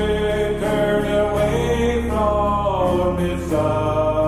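Slow country gospel song: a man's voice singing long held notes over acoustic guitar and piano accompaniment.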